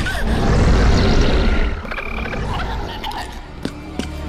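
A giant monster's deep, rumbling roar, loud for about the first two seconds and then fading into quieter effects.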